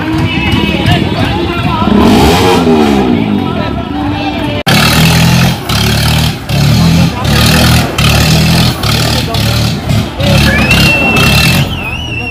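A tractor engine revving up and down over crowd noise. About four and a half seconds in, the sound cuts abruptly to a loud, rhythmic pounding beat with voices, typical of campaign-rally music and chanting.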